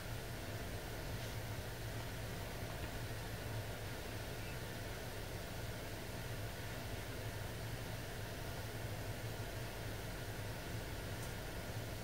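Steady low hum and airy hiss of a heat pump's indoor air-handler fan running, with the electric backup heat strips not yet switched on.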